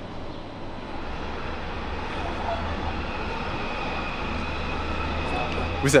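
Railway station ambience with the low rumble of a Zentralbahn electric train running past, building gradually; a faint steady whine joins in the second half.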